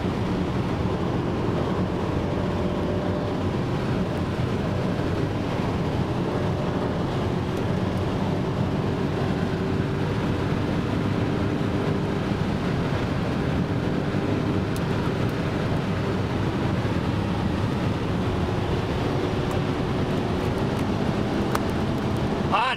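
Mercedes-Benz C63 AMG's 6.2-litre V8 running hard at a steady high speed, its note barely changing, under loud wind and road noise inside the cabin. The car is sitting on its 250 km/h speed limiter and can go no faster.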